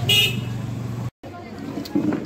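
A vehicle horn toots briefly right at the start over the steady low hum of road traffic. The sound drops out completely for an instant a little after a second in.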